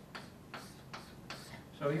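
Chalk on a chalkboard as letters are written: a string of short, sharp ticks and light scratches, about five strokes.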